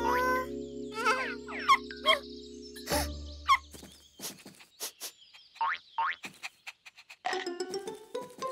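Cartoon music: a held chord, then a run of quick springy 'boing' sound effects and clicks as a cartoon creature hops and bounds along, with a new musical phrase coming in near the end.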